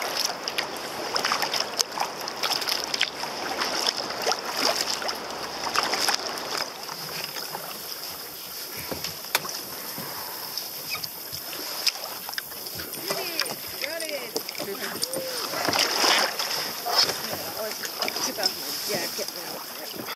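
Water splashing and lapping against a plastic sea kayak as it is paddled, with short knocks and splashes from the strokes; later, faint voices.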